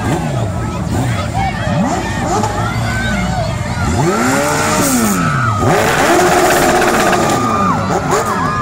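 Sport motorcycles revving in short blips, the engine pitch rising and falling, over a crowd's chatter and shouting. The sound grows louder and noisier after the middle.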